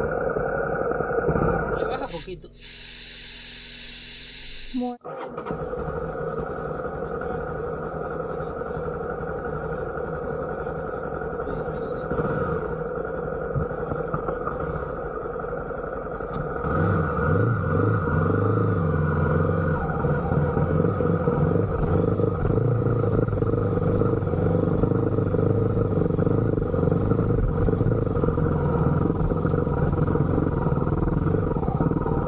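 Honda XRE300 single-cylinder motorcycle engine running steadily, then working harder and louder from a little past the halfway point as the bike is ridden up a rough dirt track. Near the start there is a burst of hiss lasting about three seconds.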